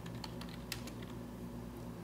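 Computer keyboard typing: a few faint, light keystrokes, mostly in the first second, as a short name is typed into a text field, over a faint steady hum.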